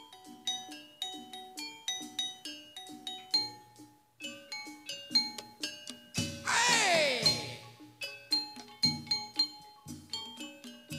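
Javanese gamelan playing a steady run of struck bronze metallophone notes in a repeating pattern. The ensemble dips briefly about four seconds in, and just after six seconds a loud tone slides steeply down in pitch for about a second, the loudest sound here, before the struck notes pick up again.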